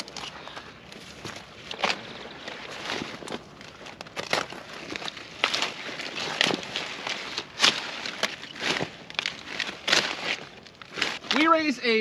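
Leafy broccoli plants rustling and crackling, with irregular sharp snaps and crunches as broccoli is cut and handled by hand, and footsteps in the crop row.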